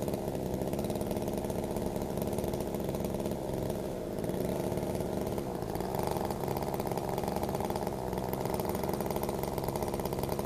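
Two-stroke gas chainsaw engine idling steadily, the saw held off the wood and not cutting.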